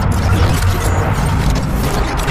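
A loud, deep rumble of cinematic sound effects with mechanical noise, part of a dramatic soundtrack.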